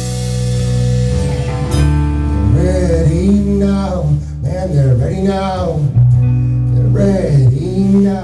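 Live indie rock band with electric guitars and bass holding a chord under a cymbal wash, then sliding, wavering pitched tones as the song winds down; the deep bass note stops near the end.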